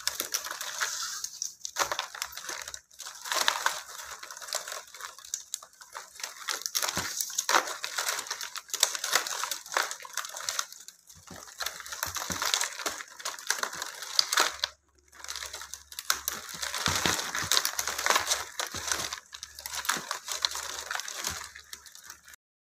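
Stiff plastic weaving tape crinkling, rustling and clicking as strips are threaded and pulled through a woven tray by hand, irregular, with a few brief pauses.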